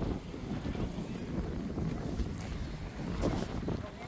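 Wind buffeting the microphone: a steady, low rumble.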